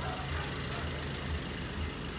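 A vehicle engine idling: a low, steady hum.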